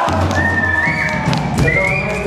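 Brief live rock-band playing: high held notes that bend upward in steps, with a low bass note under the first half.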